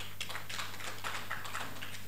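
Light, scattered applause from a seated audience: a quick run of individual hand claps that thins out and stops near the end.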